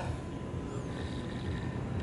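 Steady low background rumble with no distinct events.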